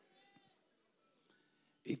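A near-silent pause in a man's speech, with a faint, short wavering call in the first half second; his voice comes back loudly just before the end.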